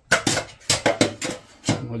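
Metal spoon clinking and scraping against a stainless-steel tray of tomato sauce: a quick run of sharp, irregular clinks for about a second and a half.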